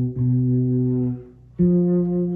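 Fretless six-string electric bass playing single held notes of a B minor 7 flat 5 chord voicing: a B that rings until a little after a second in, then, after a brief gap, the flat five, an F, that sustains.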